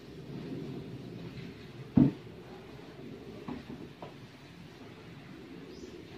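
One sharp, loud knock about two seconds in, then two faint taps, over low rustling as someone moves about a room.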